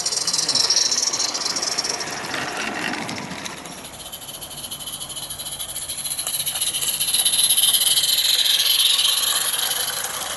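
Small live-steam garden-railway locomotives passing close by, their steam exhaust hissing; the hiss swells as the first goes past about a second in, and again near the end as a Roundhouse England hauling a rake of coaches goes by.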